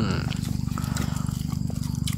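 A small engine running steadily nearby: a low, even hum with a fast regular pulse.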